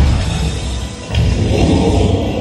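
Dramatic music from the Gringotts dragon effects show, with two deep rumbling booms about a second apart.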